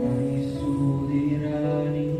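Electronic keyboard playing slow, sustained chords of a worship song, changing chord about midway.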